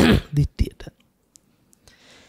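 Speech only: a man's voice speaking a few words into a microphone at the start, then a pause with a few faint clicks.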